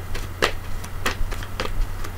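A handful of sharp, irregular clicks and taps, about six in two seconds, over a steady low hum.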